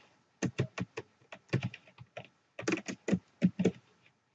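Typing on a computer keyboard: quick keystrokes in three short runs with brief pauses between them.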